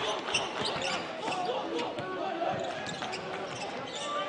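A basketball being dribbled on a hardwood court during play, a run of bounces, with voices in the arena behind.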